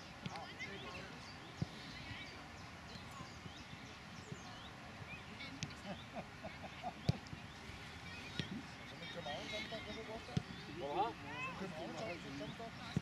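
Indistinct, distant chatter and calls of young footballers and onlookers, louder near the end, with a few sharp knocks scattered through.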